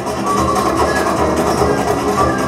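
Flamenco ensemble music with guitar, dense and rhythmic at a steady full level.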